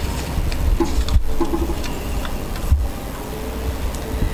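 Hands rummaging through paper raffle tickets in a container, a rustle with two sharp knocks, about a second in and near three seconds, over a steady low hum.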